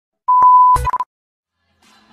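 A steady electronic beep sound effect lasting about half a second, broken by a short thump and a brief second beep, then silence.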